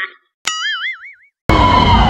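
Cartoon 'boing' sound effect added in editing: a wobbling tone that bounces upward and fades in under a second, set between stretches of dead silence. About a second and a half in, loud fairground noise with music cuts back in.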